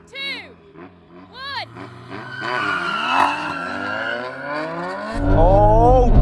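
Tuned Toyota Supra and Nissan Silvia S15 engines revving at a drag-race start line: short throttle blips that rise and fall, then revs building over several seconds. About a second before the end, a loud, deep engine note starts suddenly, heard from inside a car.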